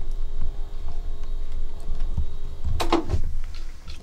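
Small electric motor turning records in an ultrasonic cleaning bath, running with a steady thin hum. The hum stops about three seconds in, as the motor's power is cut, and a click follows at that point.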